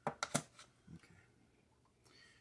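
Billiard balls knocking together in their box as one is picked out by hand: a few quick, sharp clicks in the first half second, then a faint knock near one second in.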